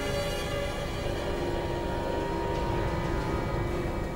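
Suspenseful background score: sustained dark tones held over a low, continuous rumble.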